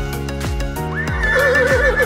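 A horse whinnying, a sound effect that starts about a second in with a quick rise in pitch and then a long wavering neigh. Background music with a steady beat runs underneath.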